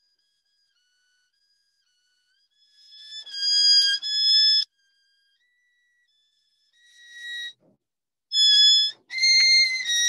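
Violin played by a student: short runs of high, steady bowed notes about three and a half seconds in and again near seven seconds, then playing that runs on from about eight seconds. The sound drops out completely between phrases.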